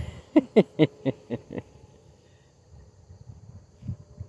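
Laughter trailing off in a run of short bursts, about four a second, that fade out about a second and a half in.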